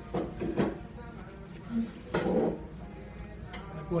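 Fast-food dining room background: a voice about two seconds in over faint background music, with a few short clattering knocks near the start.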